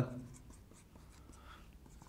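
Marker pen writing on a whiteboard: faint scratching strokes as the letters are written.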